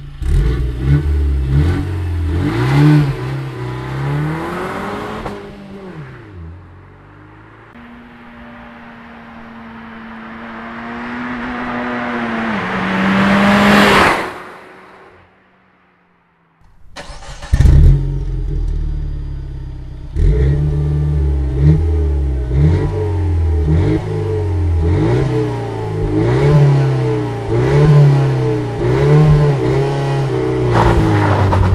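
Peugeot RCZ R's turbocharged 1.6 THP four-cylinder revved repeatedly at a standstill through its twin exhausts. In the middle a long steady engine note grows louder and then cuts off, followed by a string of quick rev blips about every second and a half.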